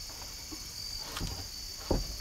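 Steady high-pitched insect chorus, with a single dull knock near the end.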